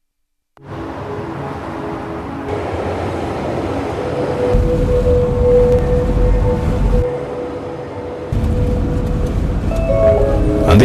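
Advert soundtrack beginning after a half-second of silence: background music over a steady traffic-like city noise, with a deeper rumble swelling in during the second half.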